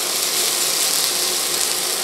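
Sliced red onion sizzling steadily in hot oil in a frying pan as it is stirred with a spatula.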